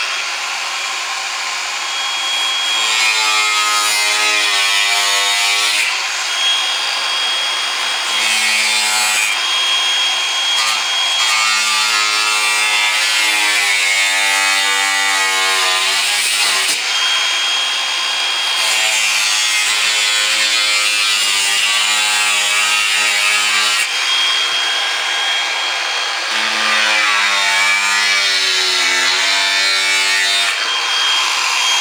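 Cordless Makita angle grinder with a thin cut-off disc, running the whole time and cutting notches into aluminum composite panel. It is loud throughout. A steady high whine alternates with five or so stretches where the pitch drops and wavers as the disc cuts into the panel.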